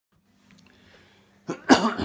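A man coughing into his fist: two quick coughs near the end, the second much louder.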